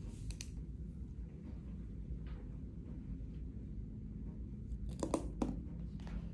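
Quiet room tone with a steady low hum, broken by a couple of light clicks just after the start and a short cluster of sharp clicks and rustles about five seconds in: handling noise as a stethoscope is held and moved against a patient's shirt during lung auscultation.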